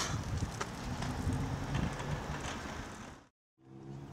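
Outdoor parking-lot ambience: a low, even rumble of wind and distant traffic with a few light clicks. About three seconds in it cuts off to a brief silence, and a steady low hum follows.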